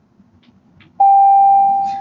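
Faint room tone, then about a second in a school's electronic bell starts suddenly: one loud, steady beep held at a single pitch, signalling the end of the class period.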